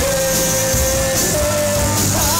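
Rock band playing electric guitars and drum kit, with one long held melody note that steps up slightly a little over a second in.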